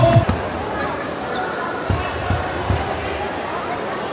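Basketball bouncing on a hardwood court: three quick bounces about two seconds in, over the murmur of the arena crowd.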